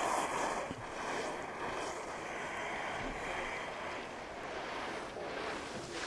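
Steady outdoor ambience on a ski race course: an even rushing noise, like wind on the microphone, with no distinct events.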